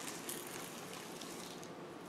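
Rolled oats poured from a plastic tub into a glass bowl of flour: a faint, soft rustle.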